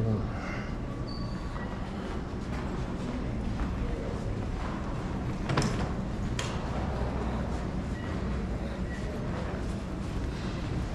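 Steady low rumble of airport terminal background noise, with two sharp knocks about five and a half and six and a half seconds in.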